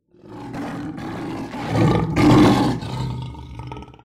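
A tiger roaring: one long, rough roar that starts suddenly, swells to its loudest in the middle and fades out near the end.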